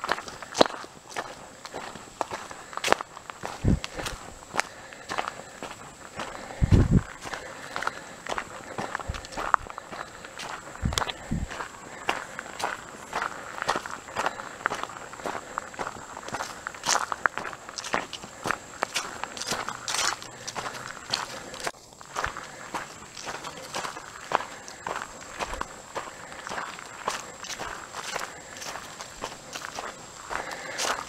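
Footsteps of a person walking at a steady pace on a dirt track covered with dead leaves, each step a short crunch. A few low thumps come in the first half.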